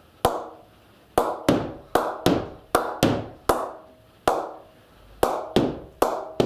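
Cricket ball bounced repeatedly on the face of a lightweight Kippax Players Edition Genesis willow cricket bat, a tap-up to test the bat's ping. There are about a dozen sharp knocks, roughly two a second, each with a brief ringing tail.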